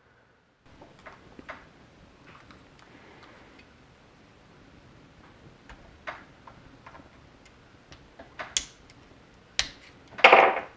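A small flat screwdriver prying and scraping at a plastic battery-pack terminal block and its metal contacts: faint scattered ticks and clicks, the sharpest two near the end.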